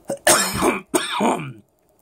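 A man coughing and clearing his throat, twice in quick succession, over the first second and a half.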